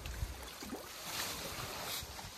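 Shallow water sloshing and splashing around a fishing net as it is hauled in by hand, with a couple of louder splashes about a second in and near the end.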